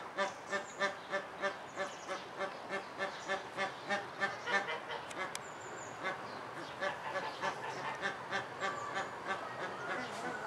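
Waterfowl honking in a steady, even series of calls, about three a second, growing weaker after about five seconds. A few thin, high bird calls sound faintly above it.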